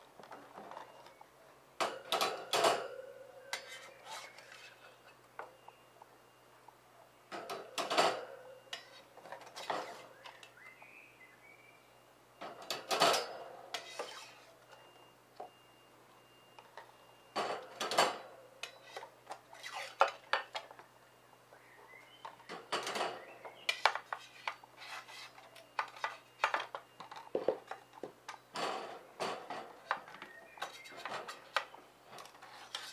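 Paint-covered ceramic tiles being set down one at a time on a metal wire rack, each landing with a clink and clatter every few seconds.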